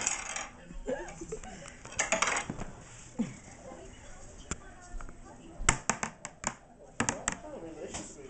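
Laughter at the start, then a run of sharp clicks and clinks: about five in quick succession a little past the middle and three more near the end.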